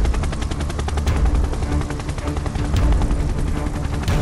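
Cartoon helicopter sound effect: a rapid, steady rotor chop over a low engine rumble.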